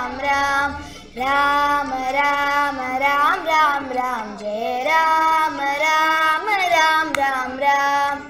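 Two young girls singing a Hindu devotional bhajan to Rama together in one melodic line, in long drawn-out notes with ornamental pitch glides and a brief breath pause about a second in.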